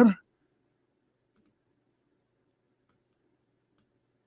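A few faint computer mouse clicks, three spread out, over near silence with a faint low hum.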